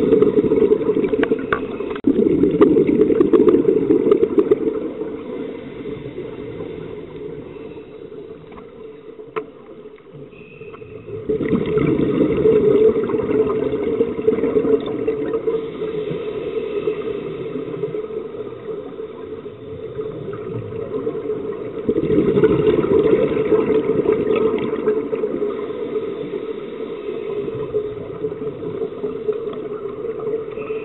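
Underwater scuba breathing: regulator exhaust bubbles rush and gurgle in surges about every ten seconds, near the start, about two, eleven and twenty-two seconds in, each fading away, with a low steady wash of water noise between.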